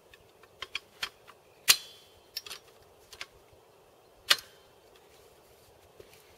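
Sharp metallic clicks and clanks from the steel anti-aircraft tripod of a Breda Model 37 machine gun as its leg fittings are tightened and set by hand, coming irregularly, with two louder clanks a little under two seconds in and about four seconds in.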